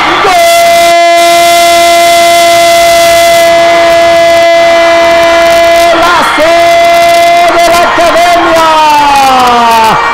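A sports commentator's drawn-out goal cry, "gooool" held on one steady note for about six seconds, then after a short breath a second long cry that slides down in pitch.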